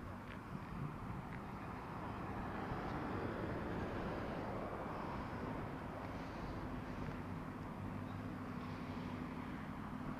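Motor vehicle noise beside a road: a broad rushing engine and tyre sound swells and fades over a few seconds, like a vehicle passing. A steady engine hum holds on from about six seconds in.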